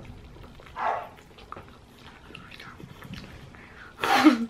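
A dog barking once from downstairs, about a second in, with faint sounds of a chicken wing being eaten.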